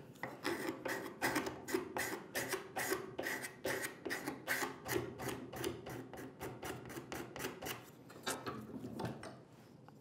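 A steel card scraper being pushed in quick, short strokes, about three a second, across the inside curve of a sapele workpiece to clean up the rasped surface. The strokes thin out and stop shortly before the end.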